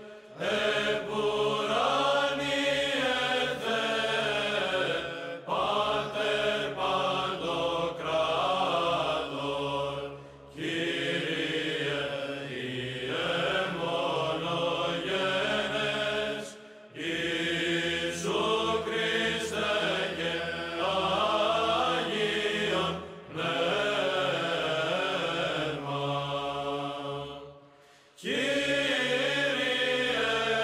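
Chanting voice sung in long phrases, broken by short pauses every five or six seconds.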